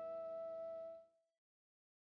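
A single thumb-picked electric guitar note rings on, fading, and cuts off about halfway through, leaving silence.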